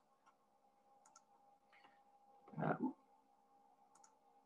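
A few faint computer clicks as slides are changed, one about a second in and two more near the end. A short, muffled low sound about two-thirds of the way through is the loudest thing, over a faint steady electrical hum.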